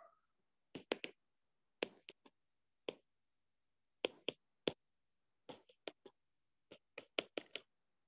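Stylus tip tapping and clicking on an iPad's glass screen while writing by hand: about a dozen faint, short clicks at an irregular pace, some in quick pairs.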